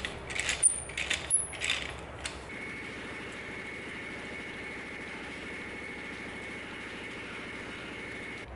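Metallic clicking and clinking as a ratchet wrench turns the threaded rod of an internal coil-spring compressor, tightening down on a front coil spring. This lasts about two seconds, then gives way to a steady low hum with a faint thin high whine.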